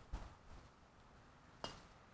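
Faint clinks of broken glass being gathered as litter, a couple of soft clicks and then one sharper ringing clink about one and a half seconds in, over near silence.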